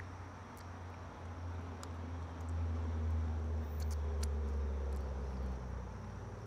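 A low, steady hum that grows louder about two and a half seconds in and eases off near the end, with a few faint clicks.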